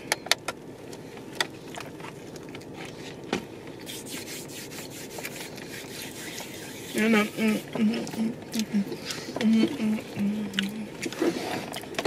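A bite into a chocolate cookie with toasted pecans, a few crisp clicks, then chewing over a steady background hiss. From about seven seconds in, a woman's closed-mouth 'mmm' sounds at short, steady, stepping pitches.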